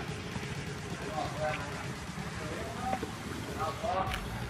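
Faint voices of people talking at a distance, in short snatches, over a steady low background rumble.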